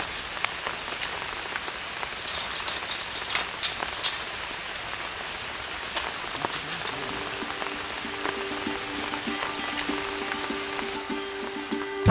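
Steady rain falling on forest foliage and ground, with scattered sharp drips. Soft music with held tones fades in about halfway through and grows louder near the end.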